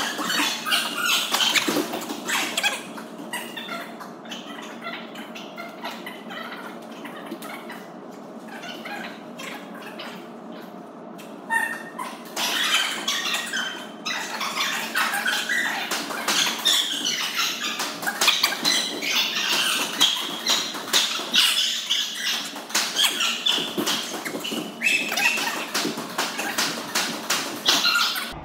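Squash rally practice: repeated sharp knocks of the ball off the racket, wall and floor, mixed with squeaks of sneakers on the wooden court floor. It is quieter for a few seconds and gets busier again about halfway through.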